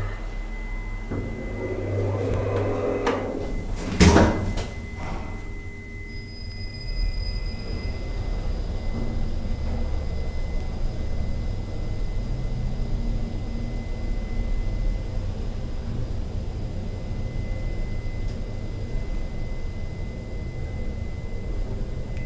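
Otis 2000VF traction elevator's automatic sliding doors running, with a single sharp clunk about four seconds in. A steady low hum with a faint high whine follows.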